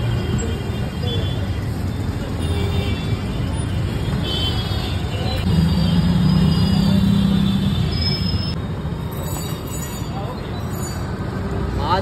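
Street traffic ambience: a steady low rumble of road traffic with distant voices, and a louder engine hum for about two seconds midway as a vehicle passes.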